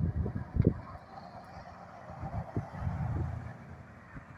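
Wind buffeting the microphone in uneven gusts, strongest in the first second and again near the end, over a faint steady wash of distant street traffic.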